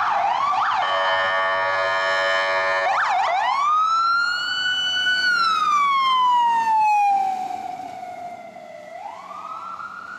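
An SFFD ambulance's siren: a fast yelp, then a steady horn blast for about two seconds. It then switches to a slow wail that rises, holds, and falls in pitch as the ambulance passes and moves away, growing fainter, and starts rising again near the end.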